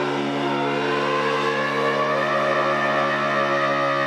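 Tuba and bass clarinet holding long, sustained notes together in free-improvised jazz: a steady low tuba drone with the reedy bass clarinet line sounding above it.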